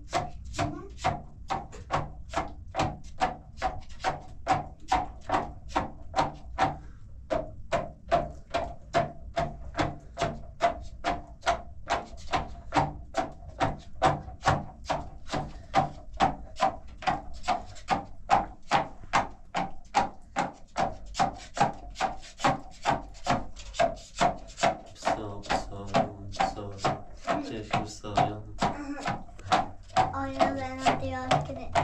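A wooden stick pumped up and down inside a plastic bottle, knocking and rubbing at about two strokes a second with a short pause near a quarter of the way in.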